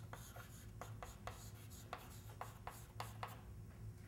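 Chalk tapping and scratching on a blackboard as a word is written: a quick, irregular run of faint short strokes that stops about three seconds in.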